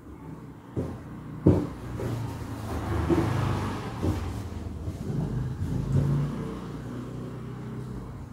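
A motor vehicle's engine is heard going past: it swells to its loudest a few seconds in, then slowly fades. A few light knocks sound in the first seconds.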